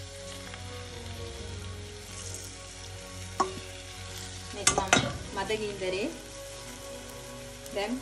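Spiced curry liquid poured from a metal bowl into a hot clay pot of squid, sizzling, while a spoon scrapes the bowl out, with sharp knocks of the spoon against the bowl about three and a half and five seconds in.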